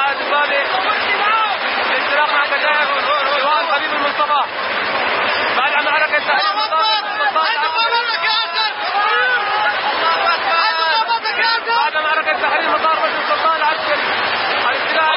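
Several men talking and shouting over one another, loud and excited, with no machine or gunfire standing out.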